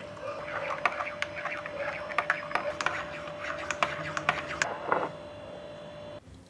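Frothed milk being poured from a small metal pitcher into a ceramic mug, with scattered small ticks and clicks over a faint steady hum.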